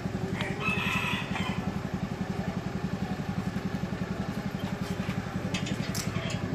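Small motor scooter engine idling with a steady, even pulse. A rooster crows once, about half a second in, for about a second.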